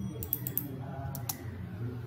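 A few scattered clicks from a computer keyboard and mouse, over a faint low hum.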